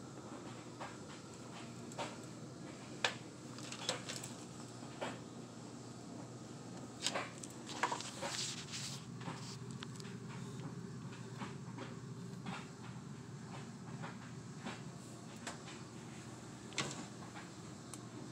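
Sporadic light knocks and clicks, most of them bunched together about halfway in, over a low steady hum.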